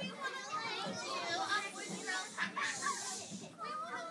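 A crowd of young children's voices chattering and calling out over one another, a lively hubbub with no clear words.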